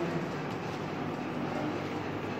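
Indistinct distant voices over a steady background hum, with no clear words.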